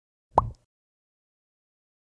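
A single short pop about half a second in, its pitch sweeping quickly upward.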